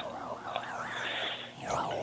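A warbling, wavering noise over a telephone line, its pitch wobbling up and down several times a second, with a brief dip about three-quarters of the way through; to the person on the call it is like a winding sound.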